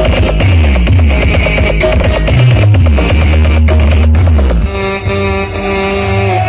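Very loud electronic dance music pumped out of a truck-mounted carnival sound-system rig, with heavy sub-bass notes that slide down in pitch. About four and a half seconds in, the track changes to long held tones over the bass.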